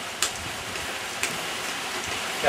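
Steady rain falling, an even hiss with two sharp ticks of drops.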